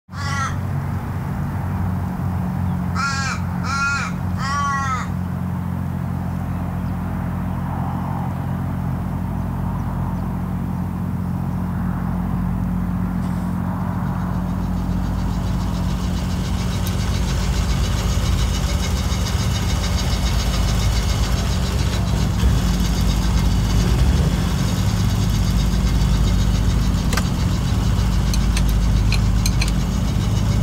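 Crows cawing: one call at the very start, then three in quick succession a few seconds in, each falling in pitch. Under them runs a steady low hum that grows louder from about halfway.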